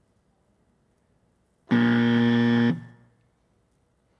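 A quiz countdown timer's time-up buzzer sounds once: a steady, low buzz lasting about a second, marking the end of the answer time for the question.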